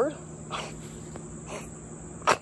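Steady high-pitched insect chorus in the grass, with two soft short noises about half a second and a second and a half in.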